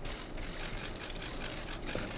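Steady hall room noise with faint, irregular clicks of press camera shutters.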